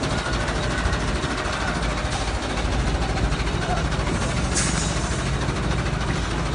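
A vehicle engine running steadily at idle, with a brief hiss about four and a half seconds in.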